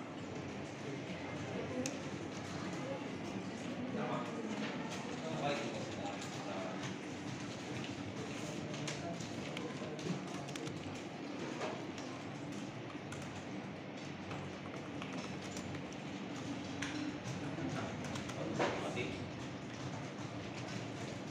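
Indistinct murmur of many voices in a busy computer room, with scattered clicks and taps of keyboards and mice.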